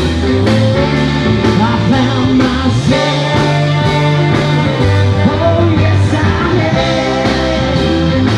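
Live blues-rock band playing an instrumental passage on saxophone, keyboards, guitars and drums, over a steady drum beat.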